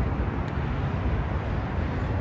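Steady outdoor background noise, a low rumble like road traffic, with one faint click about half a second in.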